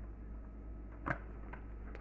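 Quiet room tone with a steady low hum, broken by one short click about halfway through.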